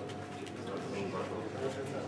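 Indistinct background talk of several people, a steady murmur of voices with a few faint clicks.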